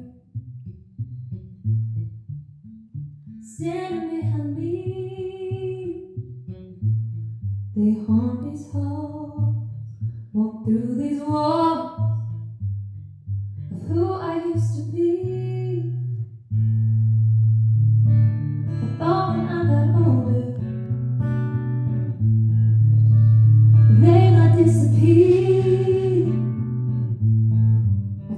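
Live country song: a woman sings phrases over a strummed acoustic guitar and a small drum kit. The music gets fuller and louder about halfway through.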